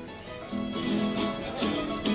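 The plucked-string band of a Cádiz carnival coro, Spanish lutes (laúdes) and guitars, playing an instrumental passage with notes held steadily.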